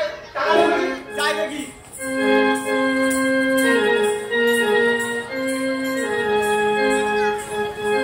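Live Bengali gajon folk music: a performer's voice over the first two seconds, then a keyboard instrument plays a melody of long held notes stepping up and down.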